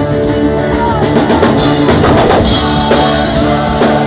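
Live rock band playing loudly, with a drum kit keeping a steady beat, guitar and a lead singer.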